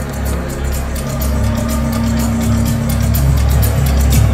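Techno played loud over a club sound system: heavy pulsing bass, with a held tone in the middle. It gets louder as the track builds toward the drop.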